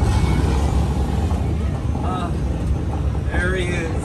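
Steady low rumble of a moving tour tram with wind on the microphone, with brief passenger voices about two seconds in and again near the end.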